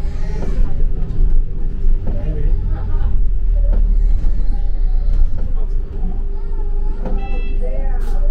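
Cabin sound of a moving London double-decker bus: a heavy engine and road rumble under a steady hum. A quick run of short high beeps comes near the end.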